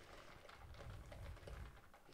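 Near silence: room tone with a faint low rumble and a few faint small clicks.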